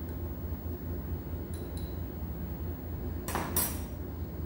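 Small clinks of a metal spoon against a small cup as cinnamon is knocked into a glass bowl, then a louder clatter a little over three seconds in as the cup and spoon are set down on a stainless steel table. A steady low hum runs underneath.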